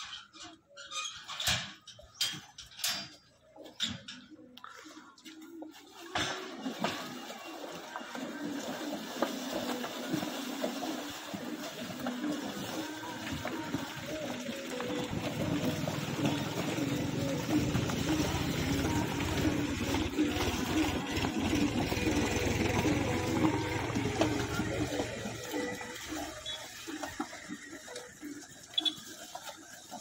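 A metal gate clanks and rattles as it is opened. Then a steady rush of splashing water comes from a herd of water buffaloes surging out of their bathing pool. It grows louder in the middle and eases off near the end.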